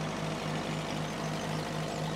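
Small farm tractor's engine running steadily as it drives along, a low, slightly pulsing drone.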